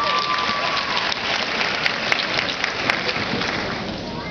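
Audience applauding, with a drawn-out cheer standing out in the first second; the clapping eases a little toward the end.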